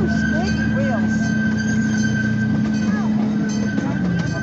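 Miniature park train running, a steady whine holding one pitch, with children's voices calling and shrieking briefly over it.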